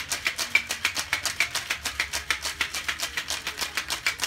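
Ice rattling inside a cocktail shaker that is being shaken hard with the liquid to chill and blend the drink. It makes a fast, even rhythm of hits, several a second, with no pause.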